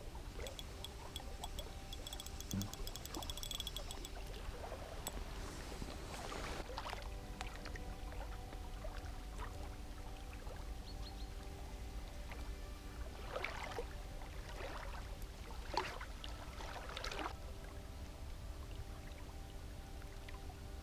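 Water splashing and sloshing in short bursts around an angler wading in the shallows, over a low wind rumble and faint steady background music. A brief rapid fine clicking comes about two seconds in.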